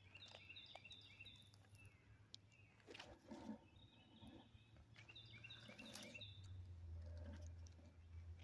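Faint bird song: a run of short repeated high notes at the start and another about five seconds in, with a few light clicks over a low steady hum.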